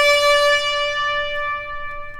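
Solo trumpet holding one sustained note, which fades away about a second and a half in.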